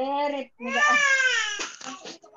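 A child's voice crying without words, in two drawn-out wails, the second longer, picked up over a video-call microphone.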